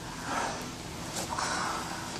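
Heavy breathing from fighters grappling on the ground: two hard, noisy breaths about a second apart.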